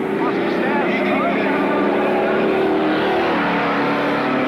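Stock car engines running as the cars lap an oval track: a steady engine drone with several pitches at once. A voice is heard briefly over it in the first second or so.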